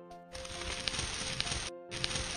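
Dense crackling, scraping sound effect of a knife scraping across skin, laid over soft background music with a slow melody. It starts about a third of a second in, carries a couple of sharp clicks, breaks off for a moment near the end and starts again.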